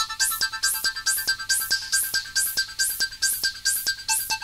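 Home-built analog modular synthesizer playing a fast arpeggio-like electronic pattern, sent through analog delays. Short high bleeps repeat about six a second over a regular pulse of falling noise sweeps, about three a second.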